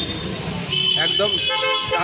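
Street background of people talking, with a vehicle horn sounding from about two-thirds of a second in, held for most of the rest.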